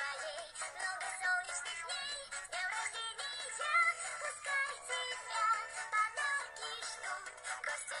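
A Russian children's birthday song playing, with a wavering melody line over the backing music. It sounds thin, with almost no bass.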